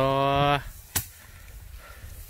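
A bundle of rice stalks beaten once against a wooden threshing frame about a second in, a single sharp whack as the grain is knocked loose in hand threshing. It follows a voice holding a drawn-out 'ohh' for about half a second.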